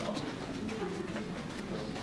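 Indistinct low murmur of voices in a room, with a few light clicks.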